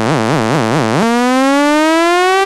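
Synthesizer in an electronic club track: a held synth note with a quick upward pitch blip about four times a second, then from about halfway a single synth tone rising steadily in pitch, a build-up riser with no beat underneath.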